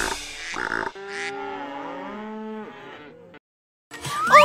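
Cattle mooing: several overlapping moos lasting about two seconds, following a couple of closing beats of a children's song. The sound cuts to silence shortly before the end.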